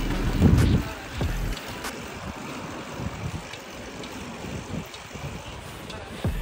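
Wind buffeting the phone microphone while cycling, with an uneven rumble from riding over brick paving. There is a heavy gust about half a second in, then steadier rushing.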